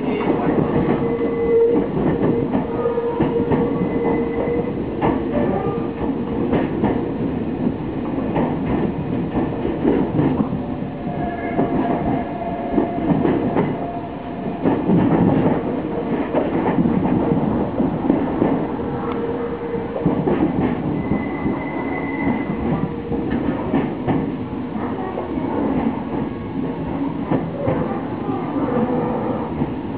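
Nankai Railway electric train running slowly over pointwork and rail joints, heard from inside the front cab: a steady rumble with repeated clicks from the joints and points, and now and then a faint wheel squeal through the turnouts.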